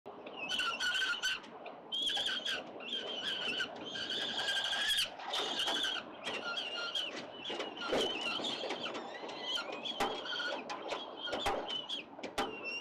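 Peregrine falcon chicks giving a run of repeated, high, squealing begging calls during a feeding.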